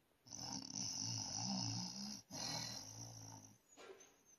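A sleeping person snoring: one long snore of about two seconds, then a second, shorter one that tapers off.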